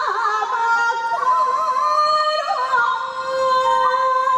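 A woman singing Akita min'yō, Japanese folk song, in the traditional style: long held notes decorated with rapid wavering kobushi turns. Near the end she steps down to a lower held note.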